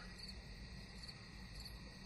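Faint, steady background noise: a low hum under a thin, continuous high-pitched whine, with no distinct events.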